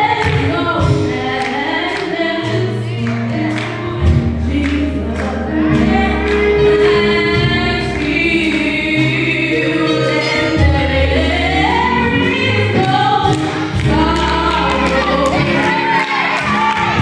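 A young woman singing a gospel song into a handheld microphone over instrumental accompaniment with long held bass notes and a steady beat. She holds a note with vibrato about six seconds in.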